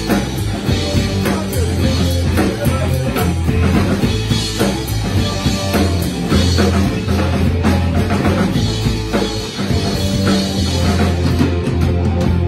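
Live rock band playing: drum kit, guitar and bass, loud and steady.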